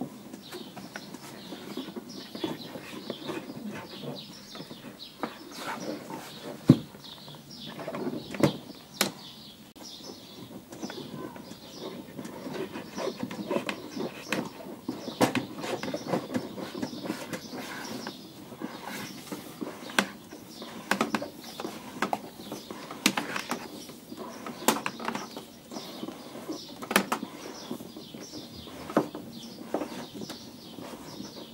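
A car's power cable being fed and pulled through under the seat and along the plastic door-sill trim by hand: continuous rustling and scraping of the cable, broken by irregular sharp clicks and knocks against the trim.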